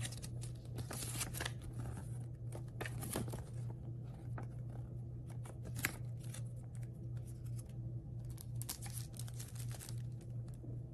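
A paper warranty card and packaging being handled: irregular rustles and light taps, with one sharper click about six seconds in, over a steady low hum.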